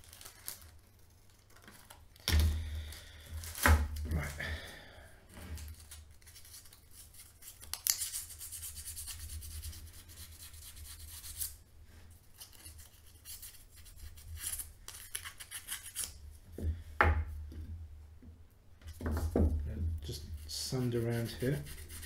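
Sandpaper being cut with scissors, giving a few crisp snips about two to four seconds in. Then hand-sanding with 800-grit wet-and-dry paper on the rusty steel cutting wheel of a manual can opener, in scratchy rubbing strokes, with one longer steady stretch of rubbing in the middle, to take off the rust.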